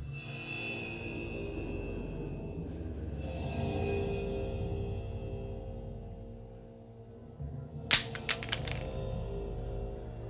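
Suspenseful drama score music; about eight seconds in, a sudden clatter of several sharp cracks in quick succession, the loudest moment.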